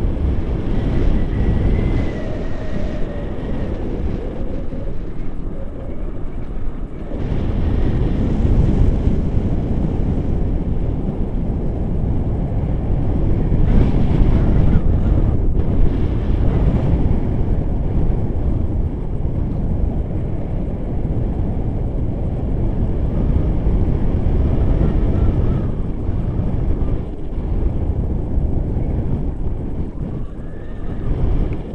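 Wind from a paraglider's flight buffeting the camera microphone: a loud, gusty low rumble that swells and eases throughout.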